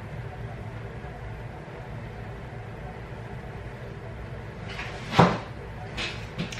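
Steady low background hum, with a single brief knock-like noise about five seconds in.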